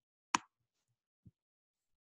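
A single sharp click at the computer, a mouse button or key press, about a third of a second in. A faint low knock follows about a second in.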